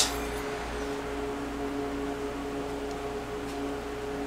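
A steady hum of two held tones over a faint hiss, unchanging throughout.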